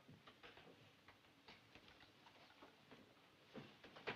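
Faint scattered knocks and shuffling of a group of men getting up from their seats and moving about, with a couple of slightly louder knocks near the end.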